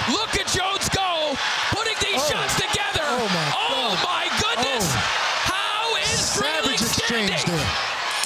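A boxing crowd yelling and cheering, with repeated sharp thuds of gloved punches landing during a flurry.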